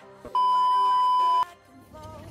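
A steady, single-pitch electronic beep, about a second long, starting and stopping abruptly like an edited-in censor bleep, over quiet background music.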